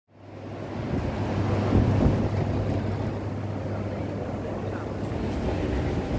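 Airport terminal hall ambience heard while riding an escalator: a steady low hum and rumble that fades in over the first half second, with a brief louder swell about two seconds in.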